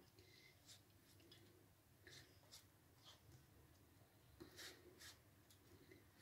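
Near silence, with a few faint, soft brushing strokes of a silicone pastry brush dabbing melted butter and oil onto rolled dough in a metal baking pan.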